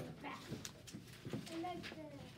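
Indistinct children's voices talking quietly in a small classroom, with a few light clicks.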